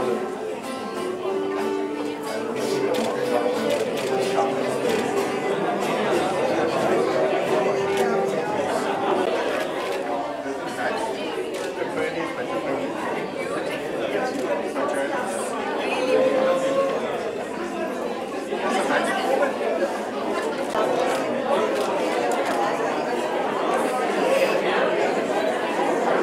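Many people talking at once in a large room, with background music; the music's held notes stand out during the first several seconds, and the talk of the crowd carries the rest.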